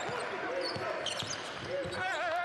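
Basketball being dribbled on a hardwood court, a steady run of bounces about three a second.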